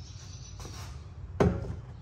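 A single sharp metal knock about one and a half seconds in as a steel suspension cradle plate is set against the truck's frame, over a low steady hum.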